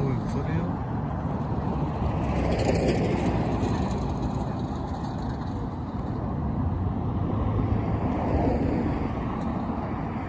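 Street traffic noise, a steady rumble of passing cars that swells and fades, with a brief thin high squeal about two and a half seconds in.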